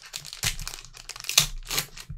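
Foil wrapper of a 2019 Unparalleled football card pack crinkling and tearing as it is ripped open by hand, in a quick series of sharp rustles, loudest about one and a half seconds in.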